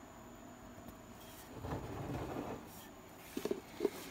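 Faint handling noise as a new turbocharger is turned and touched by hand: a soft rustle in the middle, then a few light clicks near the end as the plastic shipping cap over the compressor inlet is gripped.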